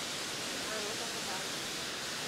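Steady rush of water spilling over a stone dam wall into a pool, with faint distant voices in the middle.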